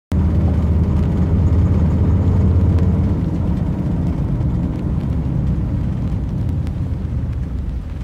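A loud, steady low rumble that starts abruptly and eases a little after about three seconds, with faint scattered ticks above it.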